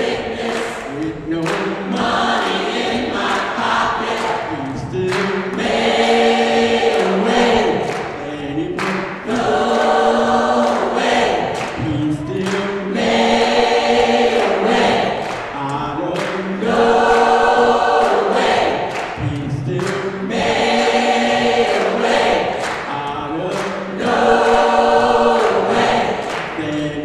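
Gospel choir singing in full voice, the same held phrase returning every few seconds.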